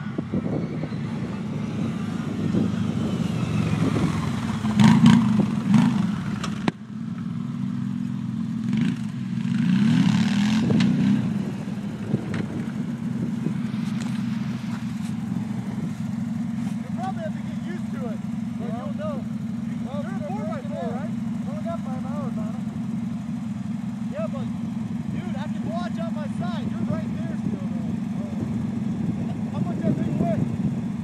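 Two V-twin 1000 cc ATV engines, an Arctic Cat Thundercat and a Can-Am, running. They swell louder twice in the first dozen seconds, then settle to a steady idle.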